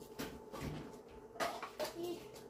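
A few light knocks and rustles of people handling a large TV as it is set in place, the clearest just before the middle and near the end, over a faint steady hum.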